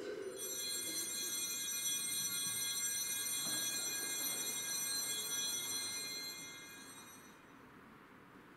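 Altar bells ringing in a steady, shimmering peal for about seven seconds, then stopping, rung as the host and chalice are elevated at the consecration of the Mass.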